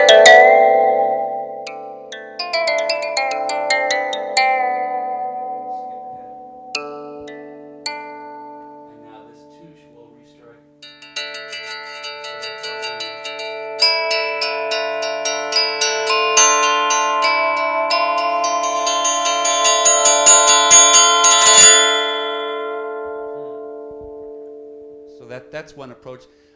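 Haken Continuum Fingerboard played with a custom preset that has a touché area under the right hand: pitched notes with sharp attacks that ring on and decay. A first phrase fades out about ten seconds in, then fast repeated notes pile up into a dense, sustained chord that is loudest a little after twenty seconds and dies away near the end.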